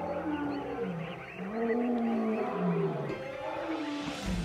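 Deep calls of a large wild animal: a string of moans, each rising and falling in pitch.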